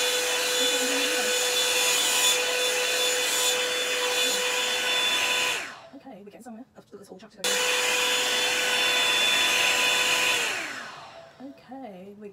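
Revlon hot-air brush dryer running with a steady whine and rush of air. It is switched off about five and a half seconds in and its pitch falls away. A second and a half later it comes back on sharply, runs again and winds down near the end.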